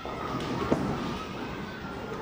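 A bowling ball lands on the wooden lane with a sharp knock less than a second in, then rolls toward the pins with a low, steady rumble, over the hum of a busy bowling alley.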